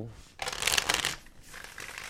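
Oracle card deck being shuffled by hand: a loud burst of cards rasping together from about half a second in to just past a second, then softer shuffling.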